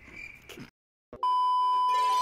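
Test-tone beep of the kind played over TV colour bars: one steady pitch, held for about a second, that comes in just past the middle after a short cut to dead silence.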